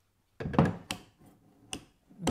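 Harvey MG-36 miter gauge head being swung on its pivot: a loud knock about half a second in, then sharp clicks as the spring-loaded detent pin pops into the positive stops.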